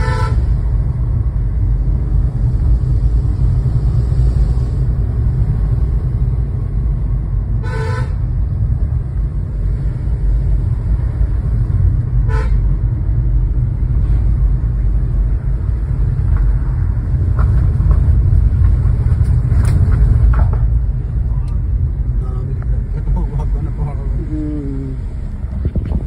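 Steady low road and engine rumble heard inside a moving car's cabin. Short car-horn toots sound at the start, about 8 seconds in, about 12 seconds in, and around 20 seconds in.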